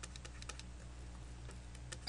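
Faint, irregular clicks of a stylus tapping and stroking on a pen tablet while handwriting, over a low steady hum.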